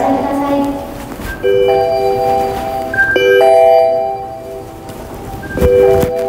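Airport public-address closing chime after a boarding announcement: three sustained, bell-like electronic tones starting about two seconds apart.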